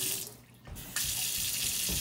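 Kitchen tap running into a stainless steel sink as a paintbrush is rinsed under the stream. The flow cuts out just after the start and comes back on abruptly about a second in.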